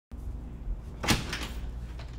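A door being opened, with one sharp sound about a second in, over a low steady room hum.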